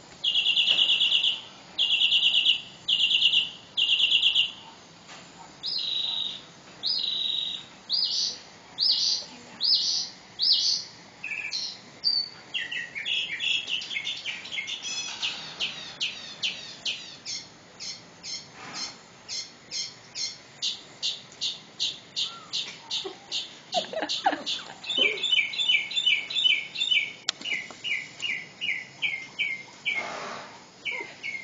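Birds calling: a run of loud, short calls in the first few seconds, then a long fast series of high chirps, about three a second, through the rest.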